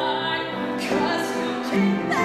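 A female solo voice belting a pop ballad with piano accompaniment, holding long sung notes and moving to a new note about a second in and again near the end.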